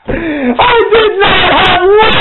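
A man's voice crying out loudly in an emotional, wailing tone, the pitch bending up and down, as in impassioned preaching.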